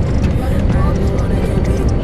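Steady low rumble of a moving coach bus, engine and road noise heard inside the passenger cabin.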